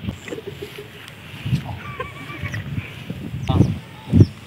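An animal call: one wavering, pitched call of under a second about two seconds in, and a shorter call near the end, over low rumbling.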